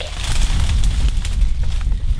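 Wind buffeting the microphone, a loud steady low rumble, with faint crackling of leafy branches brushing close by.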